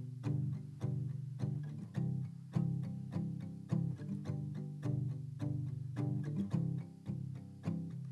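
Instrumental intro of a homemade song on plucked strings, a steady run of low picked notes, a few a second, each ringing and fading.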